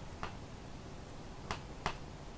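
Three short sharp clicks, irregularly spaced: one just after the start and two close together near the end.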